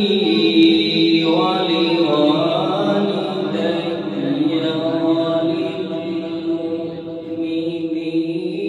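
A man's melodic Quran recitation, one solo voice drawing out long held notes that glide slowly up and down in pitch.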